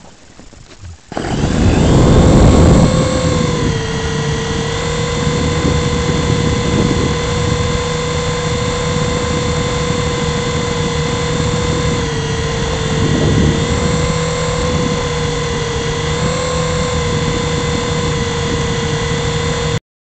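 Syma S107C mini RC coaxial helicopter's electric motors and rotors, heard from its own onboard camera: quiet for about a second, then spinning up suddenly to a loud steady whine over a low buzz. The pitch dips and recovers a few times as the throttle changes in flight.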